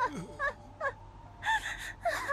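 A woman crying in a string of short, gasping sobs whose pitch swoops up and down, about two a second: a mother's grief over her dead baby son.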